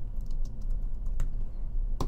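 Typing on a computer keyboard: a quick run of keystroke clicks, bunched in the first second and a half, then a pause.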